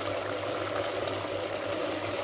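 Chicken curry gravy cooking in an aluminium pressure cooker pot on a gas flame: a steady simmering sizzle, with a faint low hum underneath.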